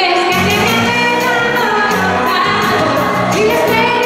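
A pop song performed live, a woman singing into a handheld microphone over amplified accompaniment with a steady beat and a bass line.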